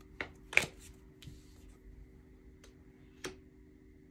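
Tarot cards being handled: a few short snaps and taps as a card is drawn from the deck and laid down, the loudest about half a second in, over a faint steady hum.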